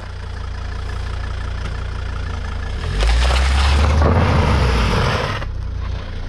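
Volvo car engine idling, then revving up for about two and a half seconds as the car pulls forward, with a rush of tyre noise on the dirt, before settling back to idle.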